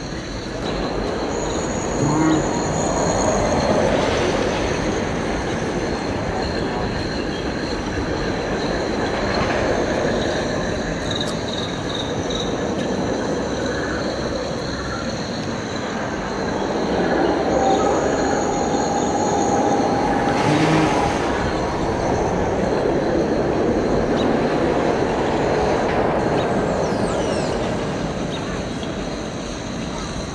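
Steel roller coaster train running along its track, its rumble swelling twice as it passes, with a high squeal from its wheels at each pass.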